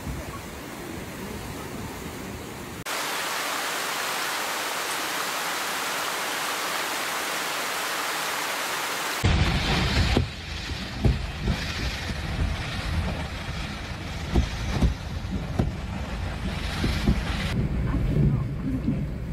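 Typhoon wind and rain: wind rumbling on the microphone, then from about three seconds in a steady hiss of heavy rain lasting about six seconds. From about nine seconds a deeper wind rumble with scattered knocks and thuds takes over.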